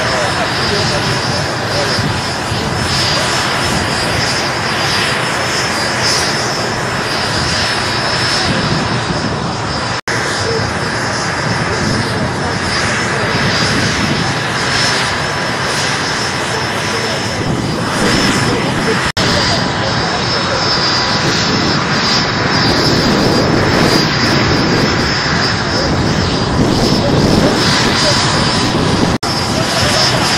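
Military transport helicopter's turbine engines running steadily, a loud continuous rush with a high whine over it, with crowd voices underneath.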